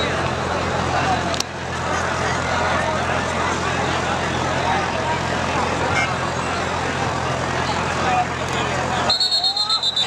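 Crowd babble at an outdoor kabaddi match over a low steady hum. About nine seconds in, a referee's whistle starts, a high shrill trilling blast that carries on to the end.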